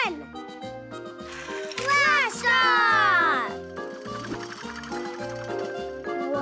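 Children's cartoon background music with a steady, bouncy bass beat. About a second and a half in comes a short rising-and-falling whoop, then a long whistle falling in pitch, as a pull-cord toy launcher sends its toy flying.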